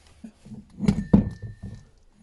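Clunks and knocks as the transmission cover is pulled off a pocket-bike (minimoto) engine and handled, with two sharper knocks about a second in, the second followed by a brief faint ring.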